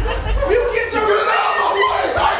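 Theatre audience laughing and chuckling, overlapping with performers' voices from the stage.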